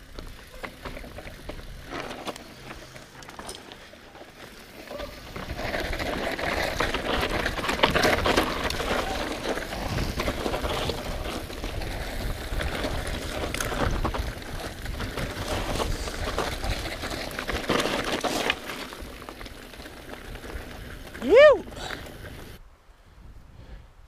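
Specialized Enduro 29 mountain bike rolling down a dry dirt-and-rock trail: tyre noise with scattered knocks, building up about five seconds in and easing off after about eighteen seconds. Near the end a rider gives a short, loud shout of "yo".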